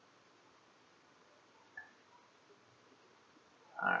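Near silence: faint room hiss, broken by one short, faint blip a little under two seconds in. A man's voice starts at the very end.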